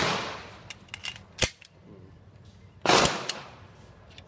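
Two gunshots about three seconds apart, each a sudden crack with a long echoing tail, with a single sharp click between them.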